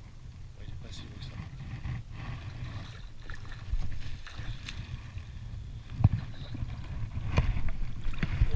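Water sloshing and splashing as a hooked sea bass is drawn to the surface and scooped into a landing net. Under it runs a steady low rumble, with two sharp splashes near the end.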